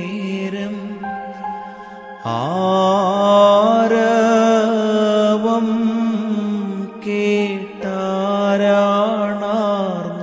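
A man singing a slow Malayalam Christian devotional song in long held, ornamented notes over keyboard accompaniment. A new phrase begins about two seconds in with a scoop up in pitch, and there are brief breaths near the end.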